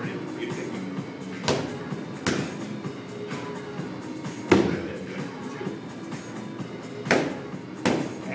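Boxing-gloved punches landing on a padded handheld strike shield: five thuds at uneven intervals, the loudest about halfway through, over background music.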